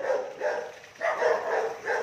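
Pet dog barking repeatedly: a few barks at the start, then a quick run of barks about a second in.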